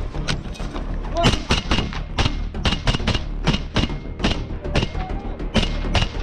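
Close-range rifle fire: a rapid string of single sharp shots, about three a second, from about a second in.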